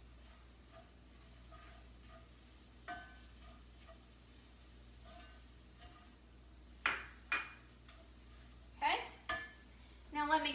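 A spoon stirring a meat mixture in a pan on the stove: light clinks and scrapes against the pan, each with a short ring. Near the end come four sharper, louder knocks, in two pairs.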